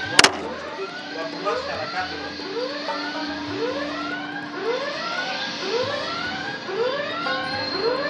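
Arcade game machine sound effect: an electronic whoop rising in pitch, repeated about one and a half times a second like an alarm sweep. A single sharp knock sounds just after the start.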